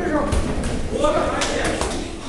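People's voices calling out in a large gym hall. A quick run of sharp slaps about a second and a half in: boxing gloves landing during an exchange of punches.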